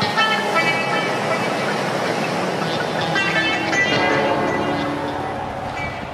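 Background music with sustained pitched notes, played over the footage.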